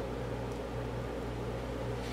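Steady low hum and hiss of room background noise, with no distinct sound events.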